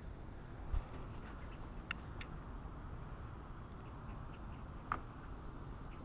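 Quiet steady low background hum, with a soft thump about a second in and a few light clicks, the sharpest near the end.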